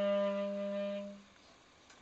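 Clarinet holding one long low note that fades away and stops a little over a second in: the last note of a tune.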